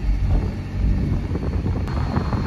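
Car cabin noise while driving: a steady low rumble of road and engine, with one faint click near the end.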